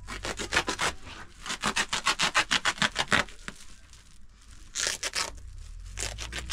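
Hands rubbing and scraping against a basin in quick repeated strokes, about five a second, easing off halfway through and picking up again near the end.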